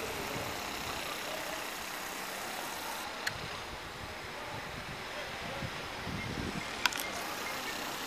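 Steady background noise with faint low rumbling, broken by two sharp clicks, about three seconds in and again near seven seconds.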